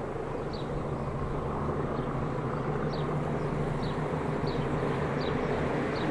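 Diesel locomotive engines working up a gradient out of sight, a steady low drone slowly growing louder as the train approaches. A bird repeats short, high chirps about every three-quarters of a second.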